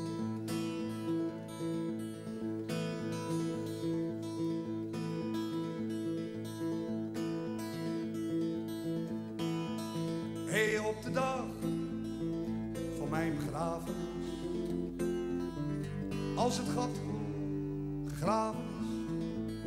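Steel-string acoustic guitar playing a slow picked introduction to a ballad, with a steady stream of notes. From about ten seconds in, a second, sliding melodic line joins it in three short phrases.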